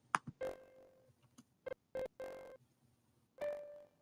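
MuseScore's built-in piano playback sounding short single notes around C5 several times, then a slightly higher note near the end, faint, with a few soft clicks between them. The notes come through even though output has been switched to the JACK audio server, which is not expected.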